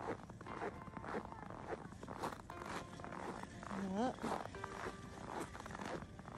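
Boots crunching through snow, about two steps a second. A short rising voice sound comes about four seconds in.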